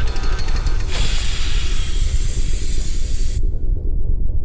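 A loud burst of hissing, like steam or air venting, over a steady deep rumble. The hiss starts about a second in and cuts off abruptly shortly before the end, leaving the rumble.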